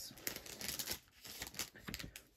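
Plastic card sleeve crinkling and rustling as a trading card is slid into it, with a quick run of crackles in the first second and a few scattered ones later.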